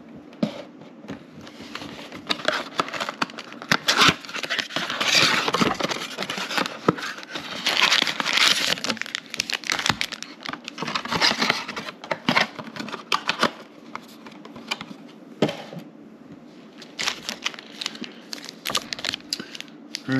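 Crinkling and tearing of card-box packaging: a trading-card blaster box being torn open and its foil packs handled, in irregular spurts of crackles and rustles with a quieter spell a little after the middle.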